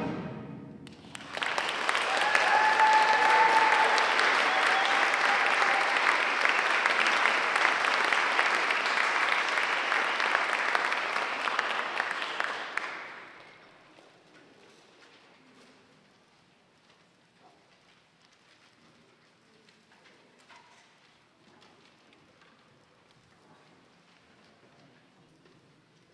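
Audience applause for a concert band that has just ended a piece, as its last brass chord dies away. The clapping runs for about twelve seconds, with a couple of short cheers near the start. It stops fairly suddenly and leaves the hall near quiet, with faint scattered stage noises.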